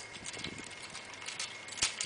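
Light clicks and knocks from the wooden tripod easel's hardwood support bars and fittings being handled, with one sharper knock near the end.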